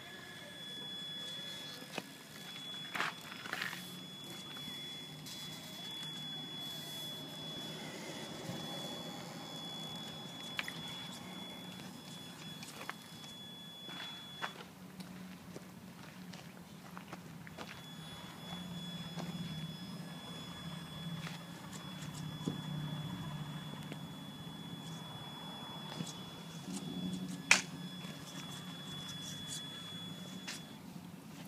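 Traxxas Summit RC crawler's electric motor and gears whining at low speed as it crawls over wooden planks, the low drone swelling and easing with the throttle over a steady high whine. A few sharp knocks of the tyres and chassis on the boards, the loudest near the end.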